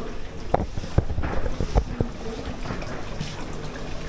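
Handling noise from a handheld camera being carried while walking: a steady rustle on the microphone with several sharp knocks in the first two seconds.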